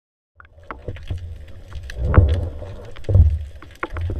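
Muffled underwater noise picked up by a submerged camera: low rumbling that swells and fades as water moves around it, with scattered sharp clicks and ticks. It starts suddenly shortly after the beginning.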